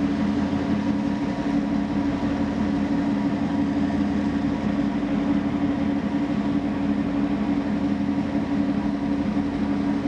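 A passenger ship's engine running steadily while the ship is under way, a constant drone with a strong low hum.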